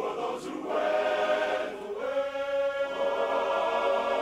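Men's barbershop chorus singing a cappella in close harmony, moving to a new chord about two seconds in and holding it.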